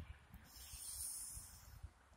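A faint breath close to the microphone: one drawn-out hiss, swelling and fading over about a second, over low irregular rumbling bumps.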